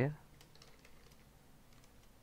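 Computer keyboard being typed on: a quick, irregular run of faint keystrokes.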